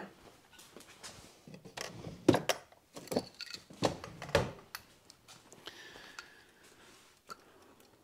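Light clicks and knocks of tools and materials being handled on a work table, most of them in the first half, then a faint brief rustle.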